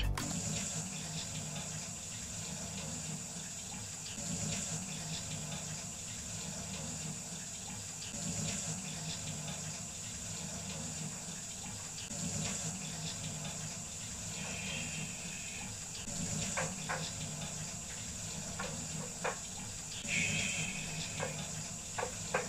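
Water running steadily from a kitchen tap into the sink. A few light clicks and knocks come in the last seconds.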